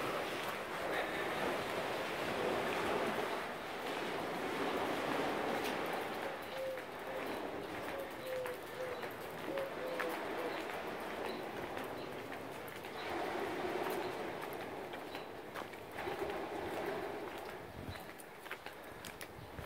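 A dove cooing: a string of short, low coos a little past the middle, over a steady outdoor background hiss and light footsteps.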